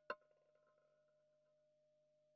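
Near silence with a faint steady tone. Right at the start comes a brief clack, trailing off into faint light rattling: a roulette ball bouncing over the spinning wheel's pockets.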